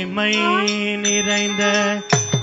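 Carnatic music: a long sustained note over a steady drone, with a gliding melodic line rising about half a second in. The drum strokes pause here.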